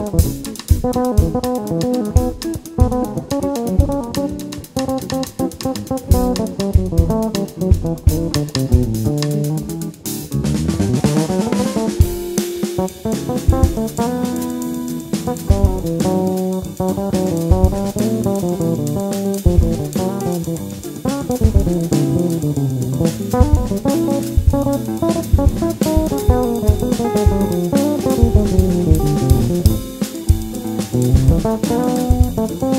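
Instrumental samba-jazz quartet playing: a busy drum kit with snare and bass drum strokes under bass guitar, electric guitar and piano. About ten seconds in the music thins for a moment, then the full band comes back in.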